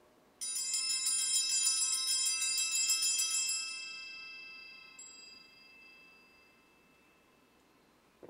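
A set of hand-rung altar bells shaken at the elevation of the chalice: a rapid bright jangle for about three seconds, then the ringing fades out slowly, with one light clink about five seconds in.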